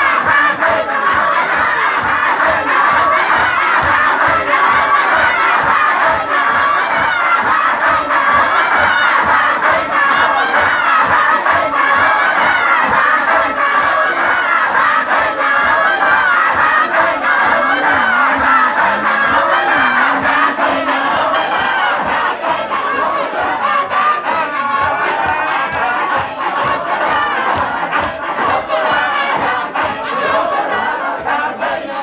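A large group of men chanting dhikr together in unison, many voices at once over a steady, fast rhythmic pulse, loud and continuous.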